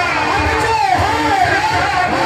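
Live devotional qasida music played loud over a PA: a plucked string instrument carries a gliding melody.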